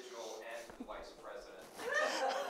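Indistinct, off-microphone talking in the room, with a voice rising in pitch near the end.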